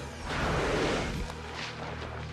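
Film sound effect of sand rushing and hissing as a person plunges headfirst into a pit of sinking sand, a loud burst lasting about a second, over sustained orchestral music.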